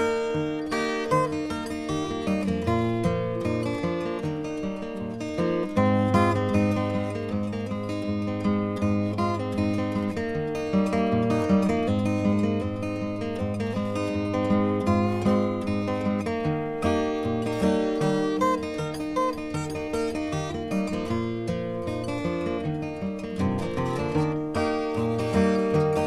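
Instrumental break on steel-string acoustic guitar, flatpicked: a steady run of quick single notes over bass notes, with no singing.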